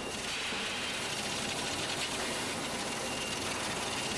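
Sausage-plant machinery running with a steady, even rush of mechanical noise.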